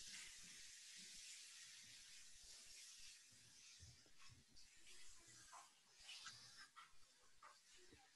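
Near silence: a faint steady hiss of room tone from an open call microphone, with a few faint scattered ticks.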